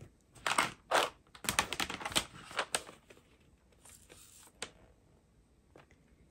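Clicks and clatter of a plastic drill storage container being handled as its clear lid is lifted off and the tray picked up: a quick run of sharp clicks and knocks over the first three seconds, then a few fainter ones.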